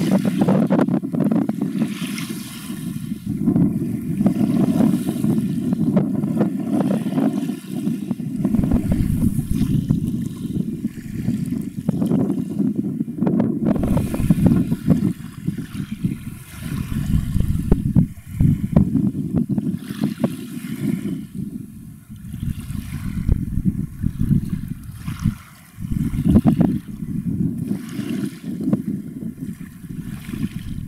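Wind buffeting the camera microphone: a gusty low rumble that swells and drops every few seconds, with occasional sharp pops.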